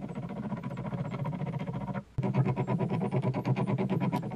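Motor-driven wooden-gear screw press running steadily as its threaded rod loads a glued wood joint, a hum with a rapid ticking. The sound drops out for a moment about halfway through, then carries on.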